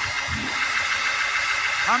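Church congregation shouting and cheering together, a dense steady crowd roar, with a voice shouting 'yeah' near the end.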